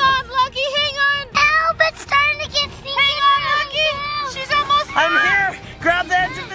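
A child's high voice singing a wordless tune in a run of held and sliding notes.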